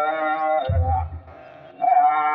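Ethiopian Orthodox clergy chanting a hymn together in long held notes, with low kebero drum beats coming in under the voices. The chant pauses briefly past the middle and comes back in just before the end.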